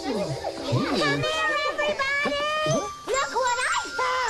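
Children's voices calling out over light background music with chiming, held tones.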